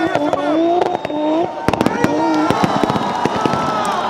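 Turbocharged 1JZ engine of a drifting BMW E36 with its exhaust popping and crackling in rapid sharp cracks, thickest from about a second and a half in. A voice over a loudspeaker runs underneath.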